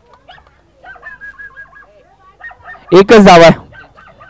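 A man's loud, distorted shout about three seconds in, a short sustained call over a commentary microphone, with faint chirping and quiet background voices before it.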